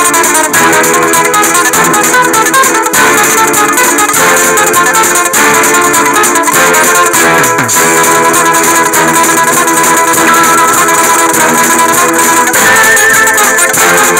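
Guitar music: plucked guitar notes over a dense, steady accompaniment, played at an even loud level, in the manner of a Persian chahar mezrab.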